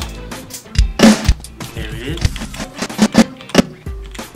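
Playback of a recorded band jam: a drum kit with bass underneath, several hard drum hits, the loudest about a second in, played back to find a snare hit to sync by.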